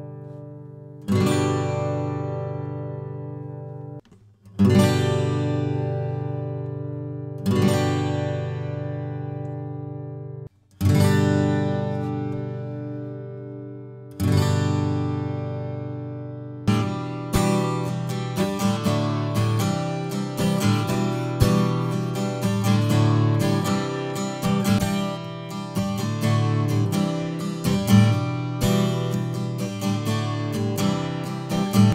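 Steel-string acoustic guitar freshly strung with Ernie Ball Earthwood 80/20 bronze strings: five full strummed chords, each left to ring and fade out, about three seconds apart. From about 17 seconds in, a Gibson J-45 with Ernie Ball Aluminum Bronze strings plays a quicker, busier pattern of picked and strummed notes.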